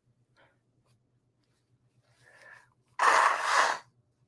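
A person blowing their nose into the microphone: one loud, noisy blow lasting just under a second near the end, after a faint brief sound a moment before.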